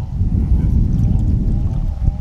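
Wind buffeting the microphone: a loud, steady low rumble, with faint voices under it.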